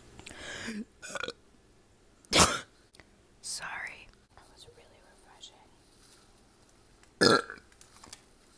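Burps and whispered mouth sounds made right at an earphone's inline microphone, with two short loud bursts, one about two and a half seconds in and one near the end.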